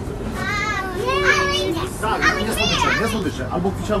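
Young boys' high-pitched voices talking and calling out, several rising and falling calls overlapping through the middle, over a steady low background noise.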